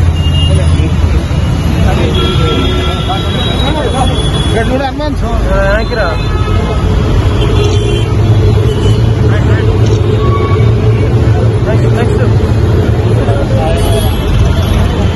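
Steady rumble of road traffic at a busy roadside, with people talking in the background.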